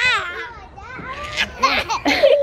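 A toddler laughing and squealing while being swung on a playground swing, with a woman's voice and laughter. A high squeal that rises in pitch comes right at the start, and more voices and laughter come near the end.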